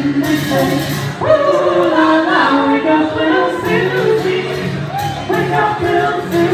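Live singing by several voices together, held notes with pitch slides.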